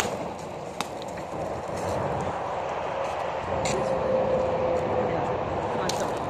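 Steady rush of traffic from a nearby interstate, with a few light clicks and a faint steady whine in the second half.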